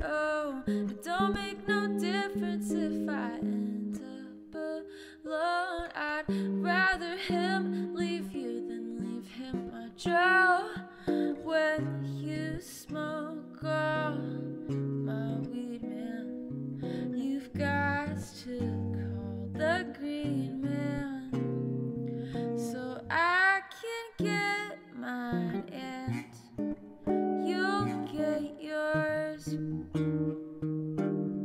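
A woman singing a song while accompanying herself on guitar, the chords ringing under her voice throughout.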